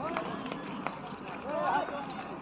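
Excited voices of onlookers calling out in short, rising and falling shouts, the loudest about one and a half seconds in, with scattered sharp clicks.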